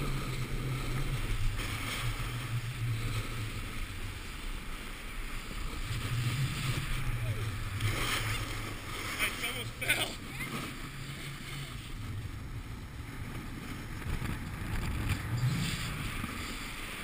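Wind buffeting the microphone of a moving action camera, over the hiss and scrape of a snowboard sliding and carving on packed snow. A few sharper scrapes or knocks come about eight to ten seconds in.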